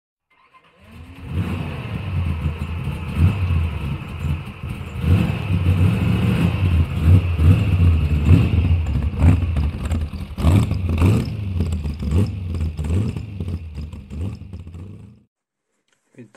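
A car engine running and revving hard. It starts about a second in and cuts off suddenly near the end.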